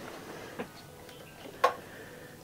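A pause between sung lines: a quiet room with a few faint ticks and one sharper click about one and a half seconds in.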